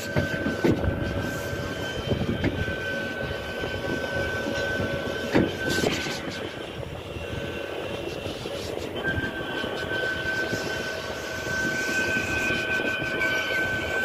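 Guided-track ride car running along its concrete track: steady rumbling of the wheels with a thin high whine that drops out briefly about halfway through, and a couple of knocks a little before the middle.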